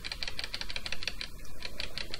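Computer keyboard keys pressed in a quick run of clicks, about ten a second, as the text cursor pages down through a document.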